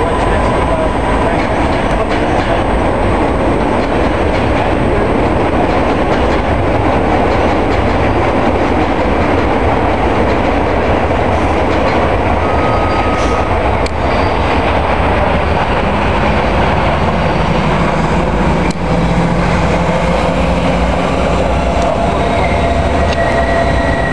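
New York City Subway L train pulling out along elevated steel track, its wheels and running gear rumbling steadily on the el structure. Near the end a lower steady hum joins in.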